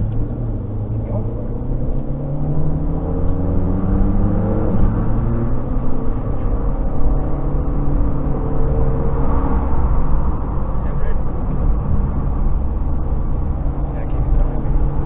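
Car engine accelerating, heard from inside the cabin: its pitch rises over the first few seconds, then it runs on steadily under a low road rumble.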